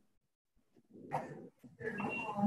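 A dog barking faintly in the background of an unmuted video-call microphone: one short bark about a second in, with more faint noise near the end.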